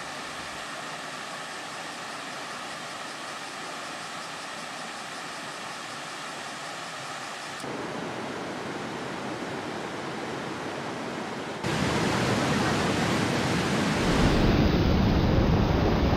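Waterfalls: a steady rush of falling water that grows louder in steps, about eight and twelve seconds in and again near the end.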